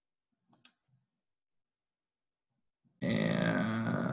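Two quick faint mouse clicks about half a second in, then, about three seconds in, a loud, sudden grunt-like vocal sound from a man close to the microphone, lasting over a second.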